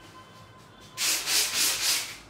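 A hand rubbing briskly over the face of a blank stretched canvas: about four quick back-and-forth strokes of dry, scratchy rasping, starting about a second in.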